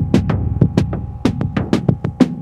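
Background music with a quick, steady electronic drum beat over a low bass line.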